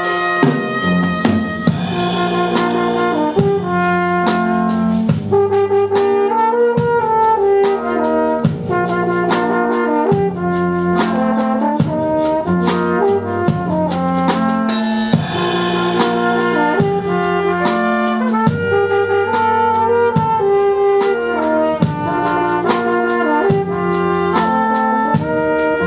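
Brass quintet of two trumpets, French horn, trombone and tuba, with a drum kit keeping a steady beat, playing a pop-song arrangement. Sustained chords in the low brass with the trumpets carrying the melody.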